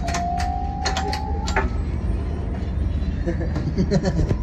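Steady low rumble of the Millennium Falcon ride cockpit's ambient ship sound. A thin electronic tone rises slowly over the first second and a half, among a few sharp clicks.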